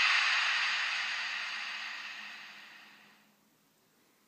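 A steady, hiss-like noise that fades out gradually and dies away to near silence a little past three seconds in.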